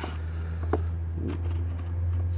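A low, steady engine-like hum, as from a vehicle idling close by, with a single faint click about three-quarters of a second in.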